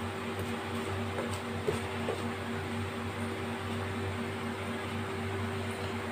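Whole dried red chillies frying gently in oil in a nonstick kadai on low heat: a soft steady sizzle over a low steady hum, with a couple of faint ticks about two seconds in.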